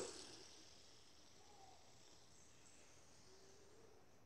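Near silence: faint room hiss.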